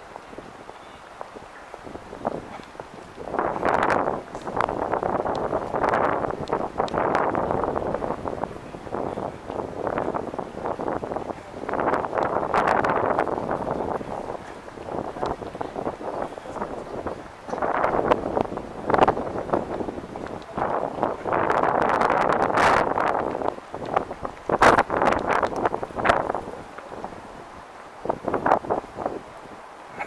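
Wind buffeting the camera microphone in uneven gusts that swell and fade every few seconds, with a few sharp clicks.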